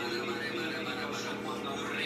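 A person's voice, unclear in words, over a steady low hum.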